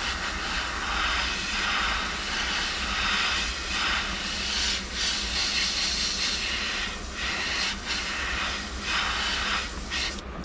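Gravity-feed airbrush spraying pearlized paint: a steady hiss of air and paint that swells and eases several times as the trigger is worked.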